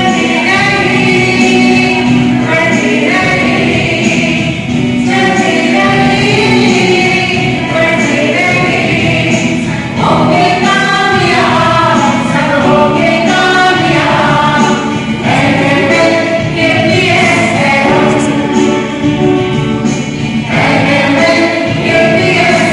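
A small group of schoolchildren singing a song together in chorus, with long held notes.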